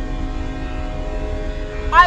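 Train horn sounding one long, steady blast, heard from inside a car over low road rumble; the blast ends as a voice starts at the end.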